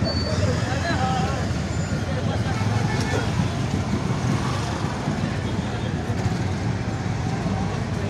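Steady traffic noise from a jammed street: the engines of buses, cars and motorbikes running, with people talking around.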